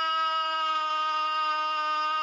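A man singing one long, steady held note into a microphone, part of a selawat, the devotional chant of blessings on the Prophet Muhammad.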